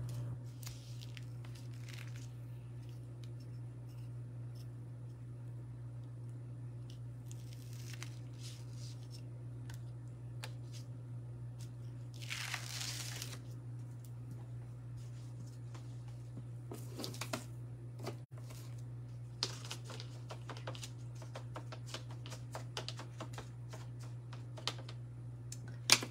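A plastic craft stencil peeled up off wooden earring blanks, with one short ripping sound about halfway through, then scattered light clicks and handling noises. A steady low hum runs underneath.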